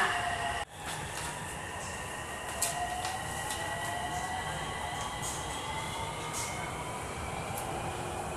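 Inside an elevated Purple Line metro train on the move: steady rolling rumble with the electric motors' whine sliding slowly in pitch, and a few faint high clicks. The sound cuts out for an instant just under a second in.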